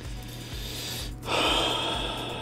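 A man's loud, rushing breath into the microphone a little over a second in, over quiet background music with a steady low beat.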